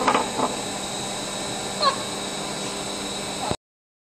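Steady hum of a running biomass boiler plant, with a constant high whine, and a short squeak that falls in pitch about two seconds in. The sound cuts off suddenly about three and a half seconds in.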